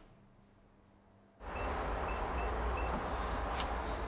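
Near silence for about a second and a half, then a steady low rumble with a hiss over it, broken by four short high chirps or beeps.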